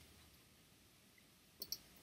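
Near silence with faint room tone, then two quick clicks from a computer mouse near the end.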